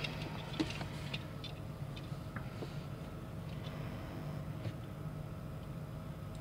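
Faint, scattered clicks and ticks of fingers handling and turning a small 1/64-scale diecast model car, over a steady low room hum.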